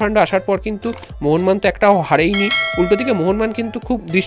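A man's narration over background music, with a bright bell-like chime ringing for about a second just past halfway through.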